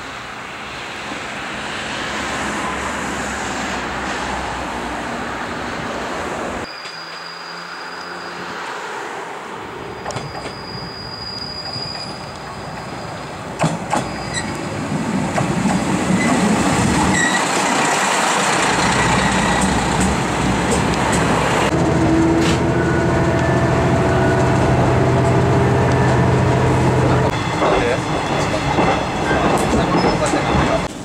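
JR East KiHa 100 series diesel railcar running in and drawing up close alongside: engine and wheels on the rails, growing louder from about halfway. A thin high squeal comes early on, and there is a steady engine drone near the end.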